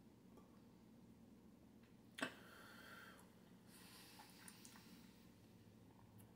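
Near silence with a single sharp click about two seconds in, followed by a few seconds of soft breathy hiss from a man breathing out as he tastes the cider.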